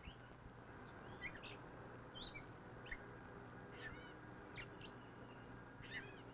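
Several birds singing faintly, a scatter of short chirps and quick rising and falling notes a few times a second, over the steady low hum and hiss of an old film soundtrack.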